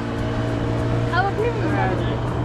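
Outboard boat motor running with a steady low hum, with people's voices over it from about a second in.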